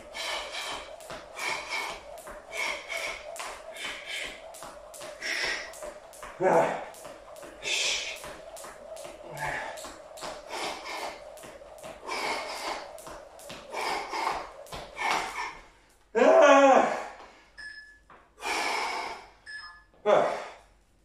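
Skipping rope in a steady rhythm on a tile floor, the rope slapping the floor and the trainers landing about two to three times a second, with heavy breathing and gasps from the effort. The rhythm stops abruptly near the end, and loud breathy vocal sounds follow.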